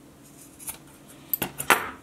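Metal scissors snipping through a paracord end: a few sharp metallic clicks, the loudest about three-quarters of the way through.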